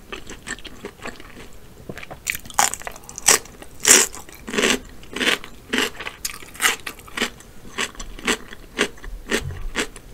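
Close-up crunching of raw cucumber being bitten and chewed: quiet wet mouth clicks at first, then from about two seconds in a crisp crunch about twice a second.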